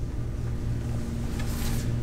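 Steady low hum of room background noise, with a faint steady tone entering about half a second in.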